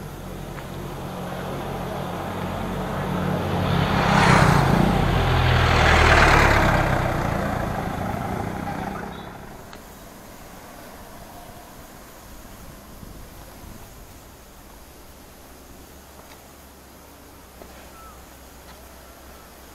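Motor vehicle engine and road noise swelling loud about four to six seconds in, then fading away just before the tenth second. A quieter, even outdoor background follows.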